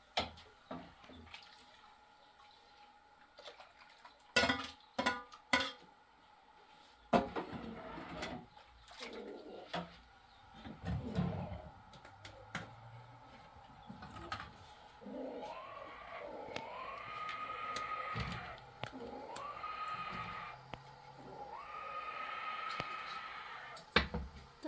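Metal spoon and aluminium pots knocking and clinking on a gas stove. In the second half water is poured in three spells, each rising in pitch and then holding steady as the vessel fills.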